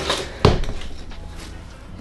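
A sharp click from a pair of metal pruning snips about half a second in, as a hoya stem is cut for propagation, followed by softer handling sounds.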